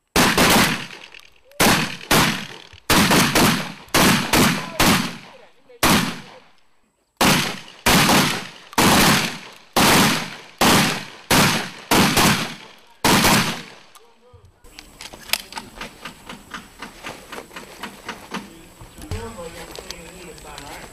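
M1014 (Benelli M4) 12-gauge semi-automatic shotgun firing about twenty loud shots, many in quick strings about half a second apart. After about fourteen seconds the shooting stops and only faint clicks remain.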